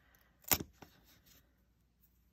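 A single sharp click about half a second in, then a faint tick, amid quiet handling as fingers press a strip of washi tape down onto a sheet of notepaper on a tabletop.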